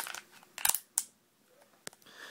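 A few short, sharp clicks of a Charter Arms .38 Special snub-nosed revolver being handled as its swung-out cylinder is closed, with a double click about two-thirds of a second in and single clicks at about a second and near the end.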